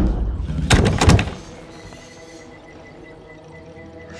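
A loud thud, then a quick run of knocks about a second in, followed by a faint steady tone.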